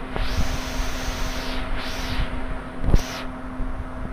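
A plastic ladle stirring boiling milk in a nonstick pan: two swishing scrapes, a long one and then a short one, and a sharp knock about three seconds in. A steady hum from the induction cooktop runs underneath.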